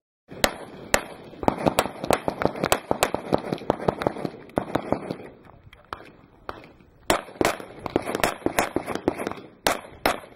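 Handgun shots fired in fast strings: a dense run of shots in the first few seconds, a lighter stretch around the middle, then another quick string near the end.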